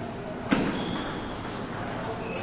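A table tennis ball clicks sharply once about half a second in, during a rally, with fainter clicks from play at other tables.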